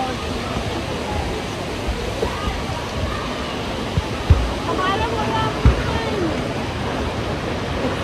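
Steady rush of water flowing through water slides, with distant voices and a few dull thumps about halfway through.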